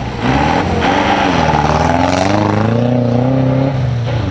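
Off-road rally-raid car passing close by at speed on a snowy special stage, engine revving hard. The engine pitch dips, then climbs and holds before the sound fades near the end.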